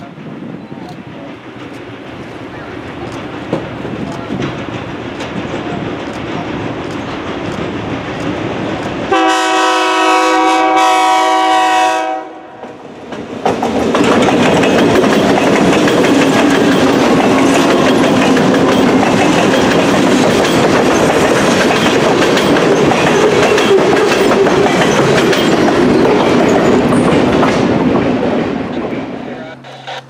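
Diesel-hauled freight train approaching and passing close by: a rumble that builds for about nine seconds, then a multi-note air horn sounds one blast of about three seconds. The locomotives' engines and the wheels on the rails then pass loudly for about fifteen seconds before fading near the end.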